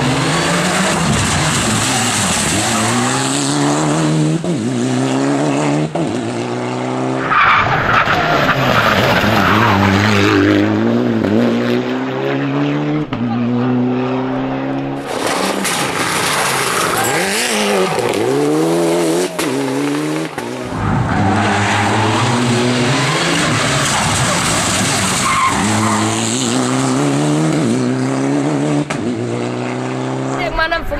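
Mitsubishi Lancer Evolution IX rally car's turbocharged four-cylinder engine revving hard, climbing in pitch and dropping again at each of many quick gear changes. In stretches there is a hiss of tyres skidding on a loose, dusty surface.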